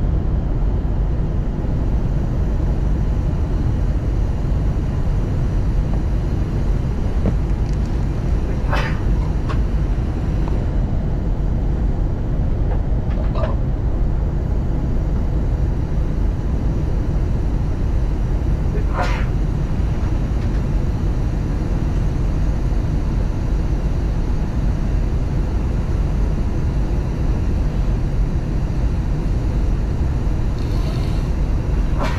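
Steady cabin noise inside an Airbus A321 airliner descending to land: a loud, even, low rumble of airflow and engines. Three brief faint higher sounds rise over it.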